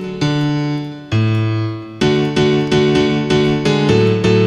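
FL Studio's FL Keys piano plugin playing a looped three-note chord pattern from the piano roll. Two held chords come first, then a run of short repeated chords from about halfway in.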